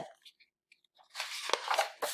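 Paper rustling as a softcover lesson book is opened and its pages flipped, starting about a second in, with a sharper flap of a page partway through.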